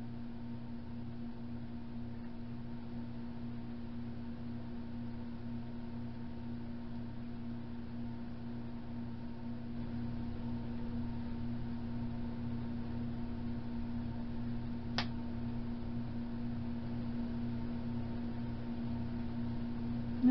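A steady low hum with a constant pitch runs throughout, getting slightly louder about halfway through. About fifteen seconds in there is a single light click of the small plastic figure pieces being handled.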